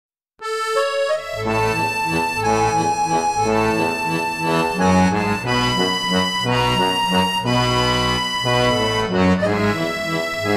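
Instrumental music: a melody line starts about half a second in, with bass notes joining about a second later and carrying on steadily underneath.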